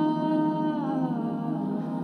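Ambient drone music: layered, sustained hum-like tones from a looper over a steady low drone, with a cluster of the higher tones gliding downward in pitch about a second in.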